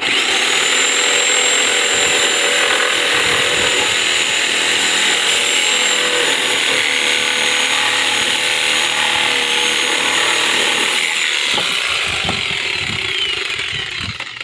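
Reciprocating saw cutting through a wooden deck post, running steadily at full speed for about eleven seconds. Then its whine falls in pitch as the motor winds down, with a few knocks as the cut finishes.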